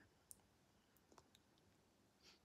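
Near silence: room tone with a few faint, short clicks, the clearest about a third of a second in.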